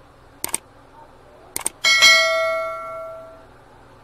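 Subscribe-button sound effect: two quick double clicks, about half a second and a second and a half in, then a bell ding that rings out and fades over about a second and a half.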